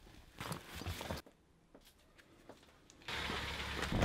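Faint brief rustles and clicks of things being handled, then silence. A low steady background noise comes in about three seconds in.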